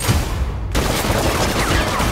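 Rapid automatic gunfire from a film soundtrack, the shots running together into a continuous loud rattle, with a brief lull about three-quarters of a second in.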